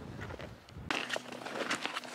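Snowshoes crunching on snow, one step after another, starting about a second in after a brief quiet stretch.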